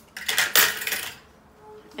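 Metal lash tweezers clattering as they are dropped into a plastic sterilizer tray of Barbicide, for about a second.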